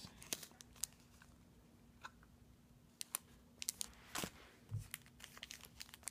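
Plastic embossing folders in clear cellophane packaging being handled: scattered light crinkles and clicks over a faint steady hum.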